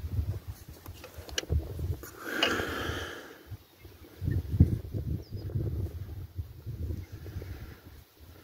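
Wind rumbling on the microphone in uneven gusts, with a person's breath close to the microphone between about two and three seconds in.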